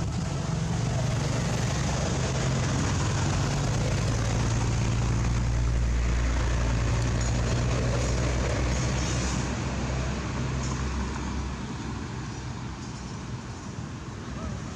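Steady low hum of a motor vehicle's engine running nearby over a broad hiss of outdoor noise; the engine hum drops away about eleven seconds in.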